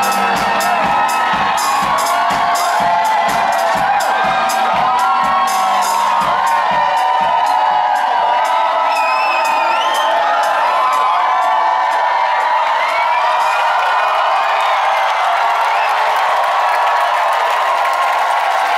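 Live band with a drum kit keeping a steady beat with cymbals, which stops about seven seconds in. An audience cheers and whoops through it and on after the drums stop.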